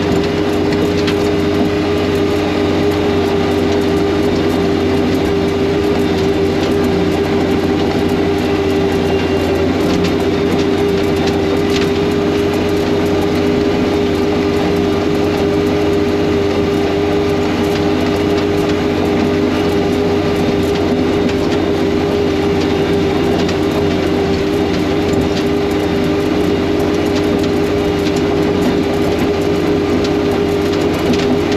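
Front-mounted snowblower and the machine's engine running steadily under load while throwing snow, heard from inside the cab: a continuous even drone with a held steady tone.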